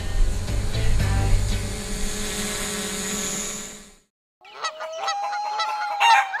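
A steady hum with held tones fades out over the first four seconds. After a brief silence comes a call like a domestic fowl's, ending in one long held note.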